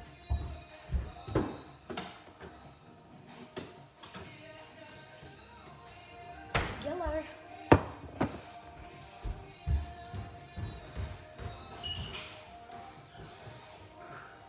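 Background music with a series of knocks and thuds, as of kitchen items being set down and handled on a counter. The sharpest knock comes a little past halfway.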